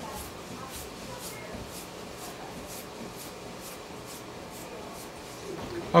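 Faint footsteps of two people walking along a hard school-hallway floor, light ticks about two a second over a steady hiss.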